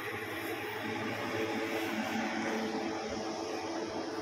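Steady background hum and hiss of room tone, with no distinct event.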